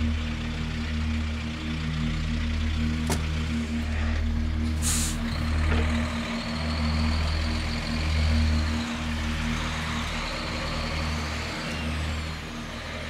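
Diesel engine of a semi-truck running steadily as the rig pulls away, with a sharp click about three seconds in and a short air-brake hiss about five seconds in.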